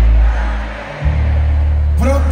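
Live band music through a concert sound system, heavy in the bass: a deep bass note dies away, then a new sustained bass note comes in about a second in.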